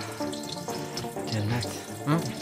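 A steady stream of liquid splashing, a man urinating against a wall, over background music of long held notes.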